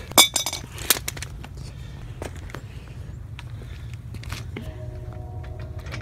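Metal clinks and knocks from a 2012 Honda Civic's scissor jack being worked against a steel basketball rim. A sharp clank with a short ring comes just after the start, then scattered clicks.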